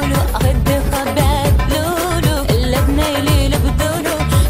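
Pop song: a woman sings a wavering, ornamented melody with vibrato over a steady beat of deep bass drum hits.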